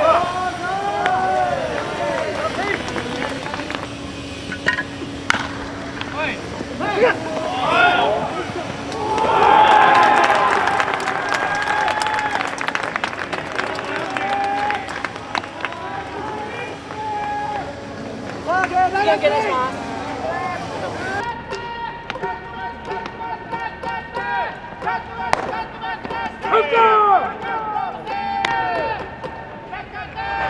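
Ballplayers' shouted calls and chatter across the field: short rising and falling yells, with a louder stretch of overlapping voices about ten seconds in.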